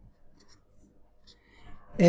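Felt-tip marker writing on paper: a few short, faint strokes as letters are written.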